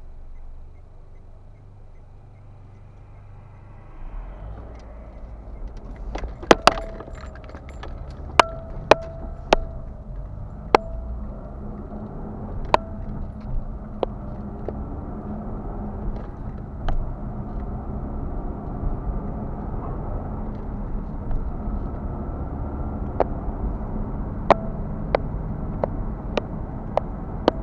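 Inside a car's cabin, the car idles quietly, then pulls away about four seconds in. Steady road and engine rumble builds as it drives on. Sharp metallic clinks and jingles come every second or two over the rumble, the loudest sounds here.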